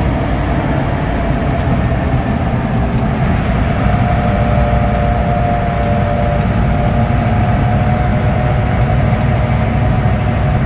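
Inside the cab of an AM General Humvee on the move: the diesel V8 and drivetrain give a loud, steady drone. A steady whine joins in for a few seconds in the middle.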